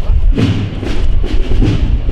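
Processional band music led by heavy drum beats, with a strong drum hit about half a second in and crowd voices underneath.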